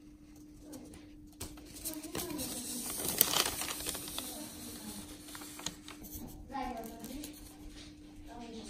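Paper till receipt rustling as it is handled, loudest about three seconds in, over a steady low hum. Brief faint voices are heard twice.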